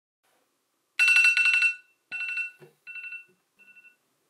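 Smartphone alarm ringing in bursts of a fast trilling two-note tone, starting about a second in. The first burst is loudest and the next three grow fainter.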